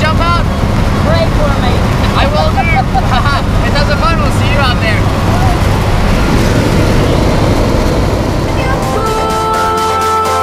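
Loud, steady drone of a jump plane's propeller engine heard inside the cabin, with people's voices calling out over it during the first half. Music with a steady beat fades in near the end.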